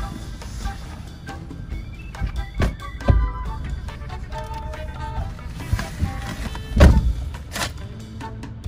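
Background music, with two heavy thuds, about three seconds in and again near the end, from a car door being opened and shut.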